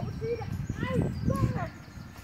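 A dog's short, high-pitched yips or whines, three or four in quick succession, each rising and falling in pitch, over a low steady rumble.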